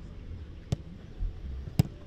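Two sharp thuds of a football being hit, about a second apart, the second one louder.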